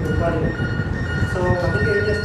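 A man speaking over a steady low rumble. A thin, steady high-pitched tone comes in about a quarter second in and holds.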